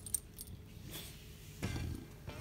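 Metal leash clip clinking and clicking as it is fastened onto a dog's harness, with a few sharp clicks in the first second. A brief louder noise comes near the end.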